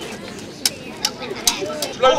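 Sharp clacks from a staged mock fight between costumed actors, four quick strikes in a little over a second, over a low murmur of children's voices.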